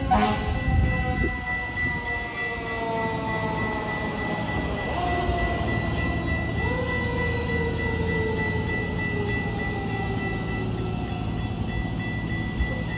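Horn of an approaching Metra commuter train sounding a long chord whose pitch slowly sags, with a fresh blast starting about six and a half seconds in, over a low rumble.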